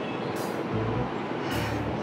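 Steady urban street traffic noise with soft background music underneath.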